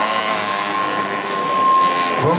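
Dirt bike engine held at high revs, one steady high-pitched note that neither rises nor falls.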